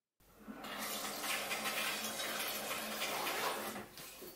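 Steady rush of running water, starting about half a second in and fading out just before the end.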